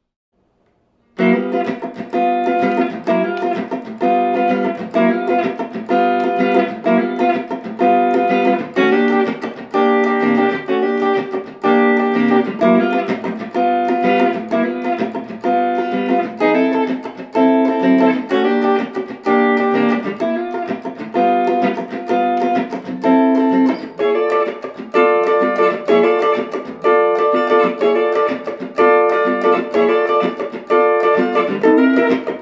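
Hollow-body archtop electric guitar playing a funk R&B rhythm groove on a 12-bar blues in G, starting about a second in. It plays short, rhythmic dominant 7th and 9th chord strikes, sliding into the chords from a fret below.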